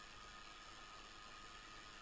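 Near silence: a faint, steady hiss of recording background noise.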